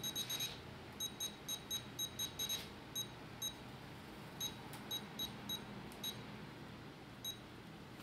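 Futaba FASSTest 14-channel RC transmitter beeping at each step of its jog dial as a trim-mix value is dialled up: short, high beeps, in quick runs for the first couple of seconds, then single beeps spaced further apart.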